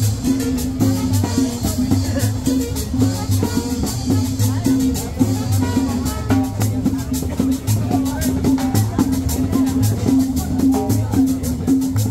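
Latin dance music from a band playing, with a steady repeating bass line under quick drum and shaker percussion.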